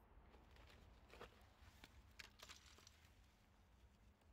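Near silence, with a few faint clicks.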